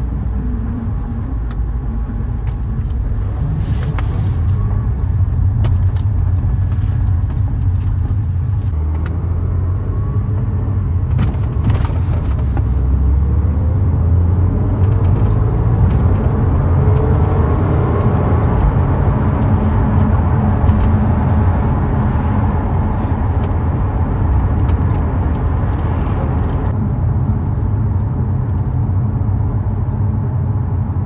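Car driving on a winter road, heard from inside the cabin: a steady low rumble of engine and tyre noise, with a few brief clicks.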